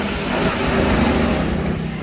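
A road vehicle passing by, a steady rushing rumble that swells slightly about a second in.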